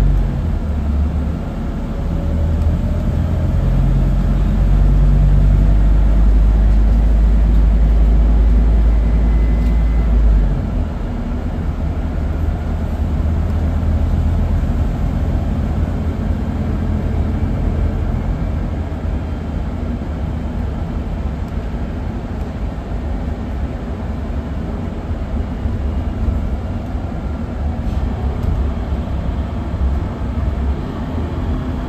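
Scania CNG city bus's engine and drivetrain running under way, heard inside the passenger cabin: a loud low drone that drops off suddenly about ten seconds in, then a lower, steadier hum with road noise.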